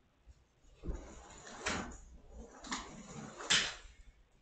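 Plastic fronds of a fake palm plant rustling in about four scratchy bursts, starting about a second in, the last one loudest.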